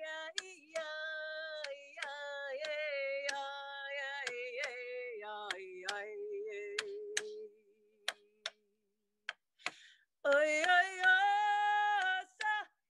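A woman sings long held notes, accompanied by steady strikes of a beater on a hand-held frame drum, about one beat every two-thirds of a second. About seven seconds in, the voice stops for some two and a half seconds, leaving only a few drum strikes, then comes back louder. Heard over a video call, the sound drops almost to silence between the strikes in that gap.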